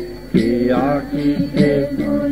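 Devotional kirtan: sung chanting over a steady percussion beat, a little more than two strokes a second.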